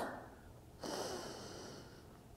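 A woman's single faint breath in, about a second long, starting about a second in.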